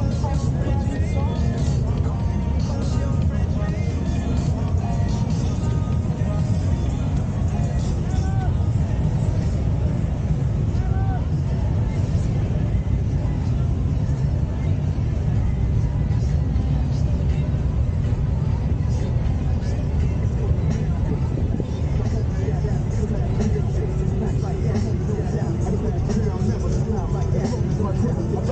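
Polaris Slingshot three-wheelers driving slowly past in a line, engines running as a steady rumble, with people's voices and music mixed in.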